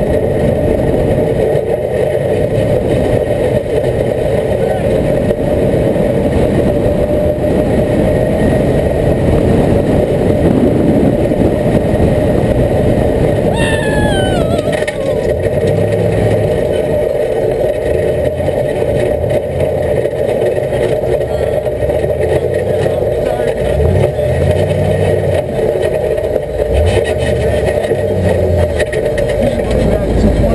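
Off-road race vehicle's engine running steadily as it drives over a rough dirt track, with a continuous drone and low rumble. About halfway a short, falling whistle-like tone passes over it.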